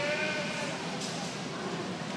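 A show lamb bleats once, a single call of just under a second right at the start, over the steady murmur of voices in the arena.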